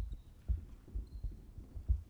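Dry-erase marker writing on a whiteboard on a stand: dull, irregular knocks from the board with the pen strokes, the loudest near the end, and a couple of faint high squeaks of the marker tip.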